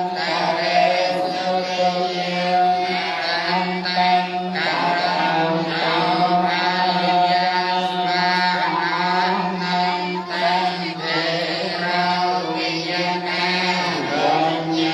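Buddhist chanting by a group of voices, held on one steady droning pitch.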